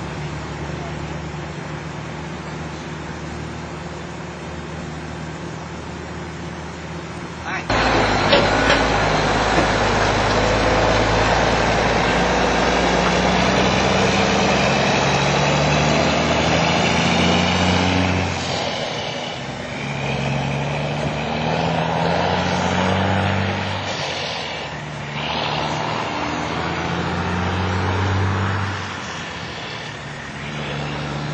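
A vehicle engine running with a steady low hum; about eight seconds in, a much louder rushing noise with a low rumble cuts in suddenly and carries on, with indistinct voices under it.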